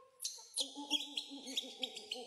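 Animal calls: shrill, high squeals pulsing a few times a second, over a layer of lower rising-and-falling calls repeating about four times a second.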